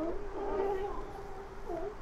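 A sea lion on the docks giving one long call, held at a steady pitch and wavering near the end.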